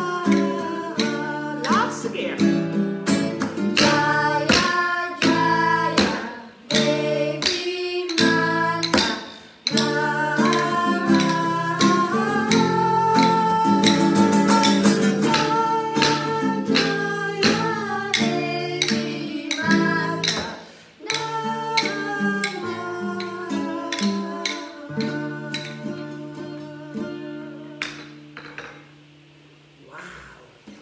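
Acoustic guitar strummed while a woman and children sing a song together. The song ends and fades out near the end.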